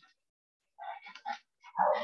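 A dog barking in short bursts: several quick ones about a second in and a louder one near the end, picked up over a video-call microphone that cuts to silence between them.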